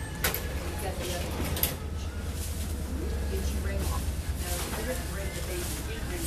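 Shop background: a steady low hum, with a sharp click just after the start and another about a second and a half in, and faint voices.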